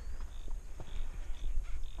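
Horse walking on a dirt yard under a rider: soft, irregular hoof steps and tack clicks over a steady low wind rumble on the helmet camera's microphone. Short high chirps come about twice a second.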